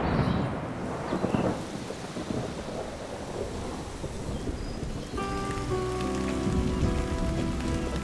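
Thunderstorm: rolling thunder rumbles near the start over steady heavy rain, the rain continuing as the thunder fades.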